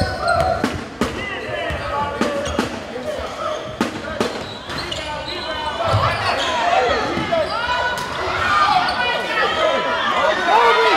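Basketball dribbled on a gym's hardwood floor, a run of sharp bounces in the first half, echoing in the large hall, with voices from the players and crowd throughout.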